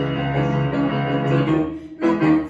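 Grand piano playing held chords that die away near the end, with a new chord struck right at the close.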